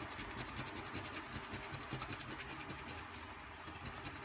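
Coin scratching the coating off a paper scratch-off lottery ticket, in rapid back-and-forth strokes that pause briefly a little after three seconds in.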